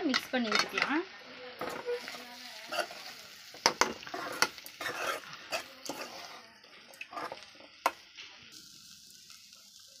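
A steel spoon stirring and scraping diced carrot and grated coconut in a metal kadai. Scattered clinks and scrapes of the spoon against the pan come irregularly, fading out towards the end.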